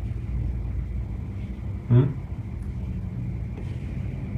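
A steady low background rumble, with a man's short questioning "hmm?" about two seconds in.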